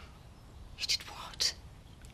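A lull in conversation with two short breathy, whispered sounds about a second and a second and a half in, like a person's breath or a half-whispered word.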